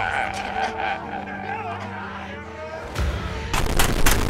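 A man wailing and sobbing over a steady low musical drone. About three seconds in it gives way to a loud low rumble and a rapid run of sharp cracks.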